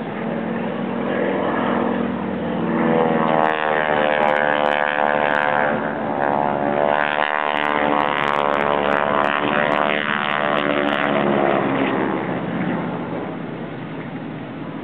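Aerobatic propeller airplane's engine passing overhead during a display, its note bending up and down in pitch as it manoeuvres. It grows louder about three seconds in and fades again after about eleven seconds.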